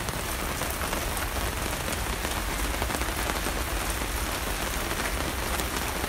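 Steady rain falling in a good little rainstorm.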